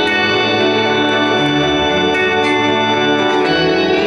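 Live rock band music: sustained organ-like keyboard chords with electric guitar, each note held for a second or more at a steady level.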